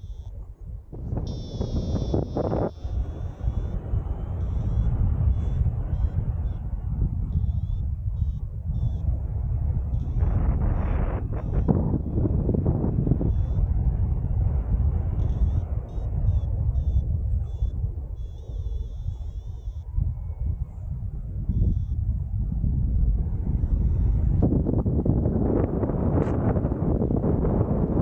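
Wind rushing over the microphone of a camera carried in flight under a paraglider: a low rumble that rises and falls with the gusts and airflow.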